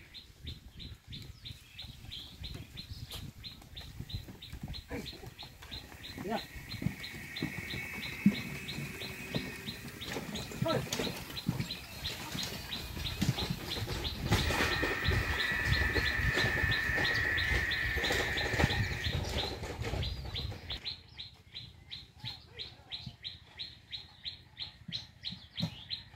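Bullock carts and a loaded cycle van rolling along a dirt road, with a wheel rumble and a high, drawn-out squeal that grow loudest about midway as they pass close. The sound falls away near the end. A high chirp repeats about three times a second throughout.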